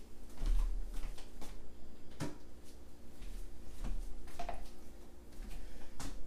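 Scattered light knocks and clicks with a few low thuds, from things being handled and set down on a work surface, over a faint steady hum.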